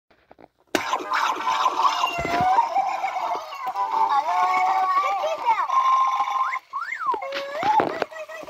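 Furrballz plush toys chattering in high-pitched gibberish voices, several at once, their pitch sliding up and down. It starts about a second in, and near the end there are quick rising-and-falling whoops.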